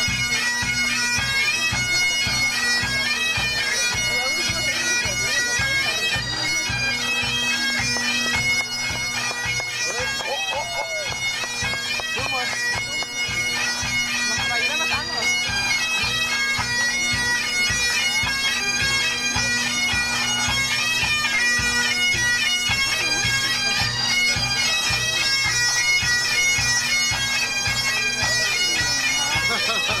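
Pipe band playing: several Highland bagpipes on a tune over steady, unbroken drones, with regular drumming underneath.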